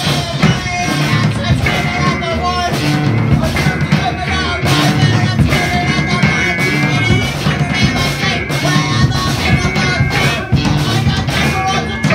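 Live rock band playing loudly: drum kit, electric guitar and keyboard, with a held, wavering high note running over the beat.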